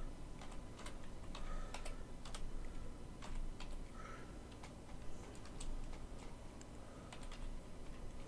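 Typing on a computer keyboard: irregular, fairly quiet key clicks, a few a second, as a short web address is keyed in.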